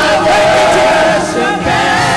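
Two men singing gospel into microphones, one voice holding a long steady note through the first half before the lines move again.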